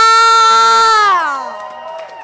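A woman's voice through a microphone holds one long high note for about a second and a half, then slides down in pitch and fades away.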